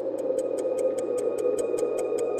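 Fast clock ticking sound effect, about four to five even ticks a second, over a sustained droning music pad, marking time passing.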